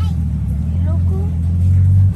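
A steady low mechanical hum, engine-like, that swells slightly near the end, with faint voices in the background.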